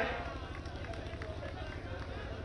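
Faint crowd murmur at a rally, over a steady low hum.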